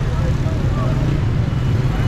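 Busy street ambience: motorcycle and traffic engines running with a steady low rumble, and people talking in the crowd.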